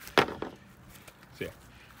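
A single sharp clack as a small black part is set down on a plastic folding table.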